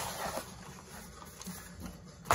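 Faint rustling and scraping of cardboard toy packaging being handled and opened, with a few soft taps.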